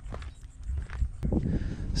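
A faint low rumble with a few soft clicks, then a voice begins about a second and a half in.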